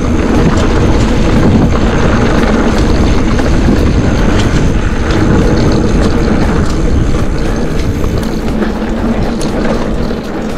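Mountain bike rolling along dirt singletrack: steady rumble of knobby tyres on the trail and frequent small rattles and clicks from the bike, with wind buffeting the action-camera microphone.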